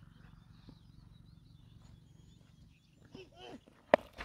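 Faint open-air background, then near the end a single sharp crack of a cricket bat striking a leather ball as the batter hits it for four.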